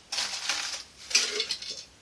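Loose seeds rattling against a metal tin can, in two bursts of under a second each.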